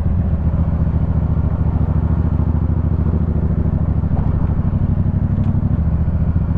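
Yamaha MT-07 parallel-twin engine running steadily at low revs, with a fast, even pulse, as the bike rolls slowly in traffic.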